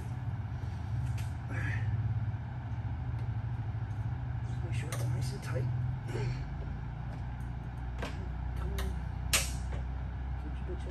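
Scattered clicks and taps of hand tools and small parts as a new mass airflow sensor is fitted into the intake and its screws started, over a steady low hum. The sharpest click comes near the end.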